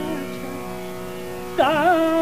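Hindustani classical vocal in raga Bageshree: a steady tanpura drone, with a sung phrase entering near the end that wavers up and down in pitch.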